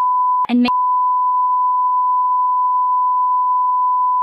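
A single steady censor bleep tone masking spoken spoilers. It breaks off for a moment about half a second in for one spoken word, then carries on.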